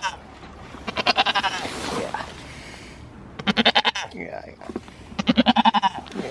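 Goat bleating: three loud, quavering bleats, about a second in, midway through and near the end.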